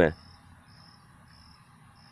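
A cricket chirping: short, faint, high-pitched chirps repeating evenly, about three a second.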